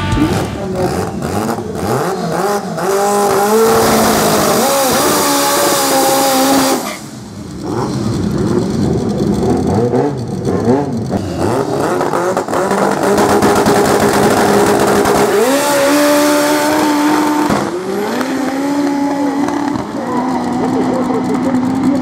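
Forced-induction Fiat 147 engine revving repeatedly and being held at high revs at a drag-strip start line, then accelerating hard down the strip.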